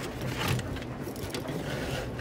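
Quiet handling noise: a hand shifting a refrigerator control board, its display panel and the test leads on a cutting mat, with a few faint light knocks.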